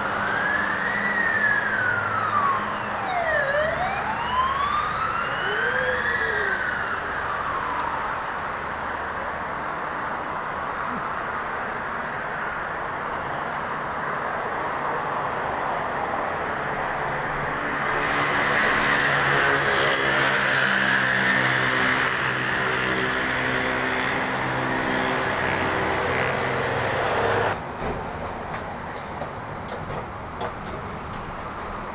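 Electric metro train's traction motor whine gliding up and down in pitch in repeated sweeps as it pulls out of the station. From about 18 s a louder rushing rumble comes in and cuts off suddenly near the end.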